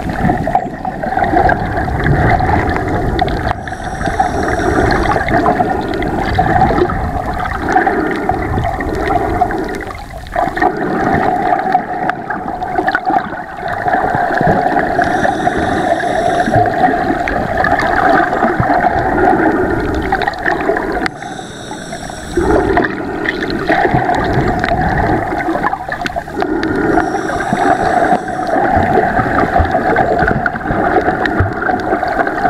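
Underwater sound picked up by a submerged camera: a steady, muffled rush and gurgle of water, with a few brief higher-pitched sounds scattered through it.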